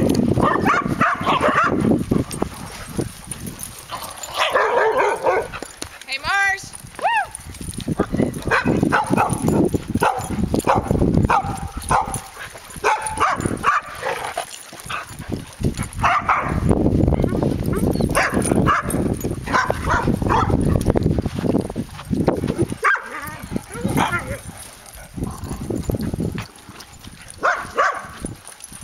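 Several dogs barking and yipping in short bursts as they chase each other in play, over a steady low rumble.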